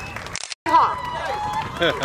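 People talking over a PA, with a brief total dropout in the recording about half a second in.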